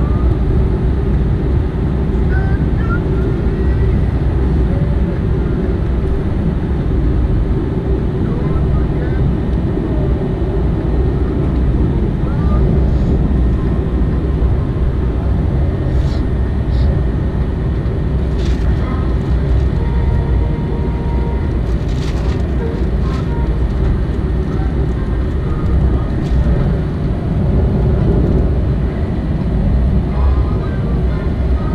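Steady jet-engine and airflow noise inside an airliner cabin in flight, heard at a window seat beside the engine. A few faint clicks come from the cabin around the middle.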